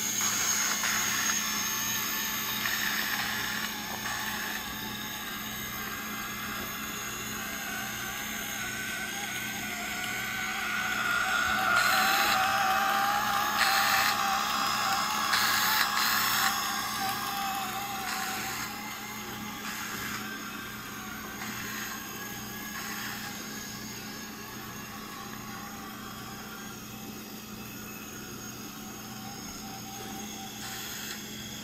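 Small Lego electric motors and plastic gears whirring as a Lego tractor-trailer drives across a tile floor, with a thin whine. It grows louder as the truck passes close by in the middle and fades as it drives away.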